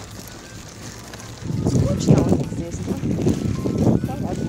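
Wind buffeting the phone's microphone: a ragged, uneven rumble that sets in about a second and a half in and keeps gusting, over a quieter street background.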